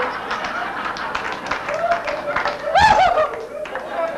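Comedy-club audience laughing and clapping after a punchline, with many overlapping claps and a loud hooting voice about three seconds in.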